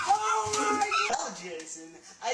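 A person's high, drawn-out scream that falls away about a second in, followed by fainter voice sounds.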